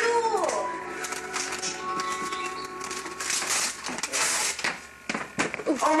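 Wrapping paper tearing and rustling in quick crackles as a present is unwrapped, under people's voices. In the first couple of seconds a voice holds one long, steady note.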